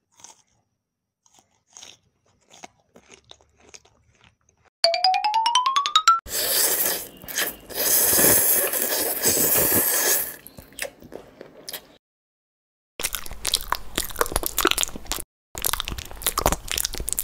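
Close-miked ASMR eating sounds: crunching and chewing of crisp food. About five seconds in, a rising whistle-like sound effect is heard, followed by a long stretch of loud crunching. After a short pause, more crackly crunching comes near the end.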